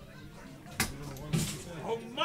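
Low background chatter, with a sharp click a little under a second in and a short noisy thud about half a second later: handling noises from musicians setting up gear.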